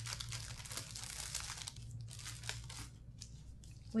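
A small plastic bag crinkling as it is opened and rummaged through for about two seconds, then a few light clicks and taps as small items are handled.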